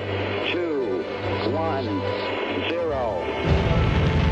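Saturn V rocket engines igniting at liftoff: a deep, loud rumble that starts suddenly about three and a half seconds in, under music and a voice.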